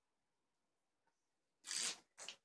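Plastic drink bottle crackling briefly once, near the end, as it is squeezed while being drunk from.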